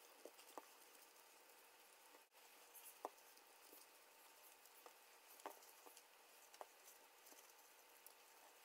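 Near silence with a few faint soft taps and rustles as hands fold egg roll wrappers on a kitchen countertop; the clearest tap comes about three seconds in.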